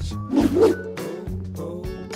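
Background music with a steady low beat, and a short dog vocalization from a corgi about half a second in.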